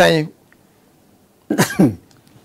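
An elderly man's voice: a spoken phrase ends, then after a pause of about a second comes one short vocal burst with a falling pitch.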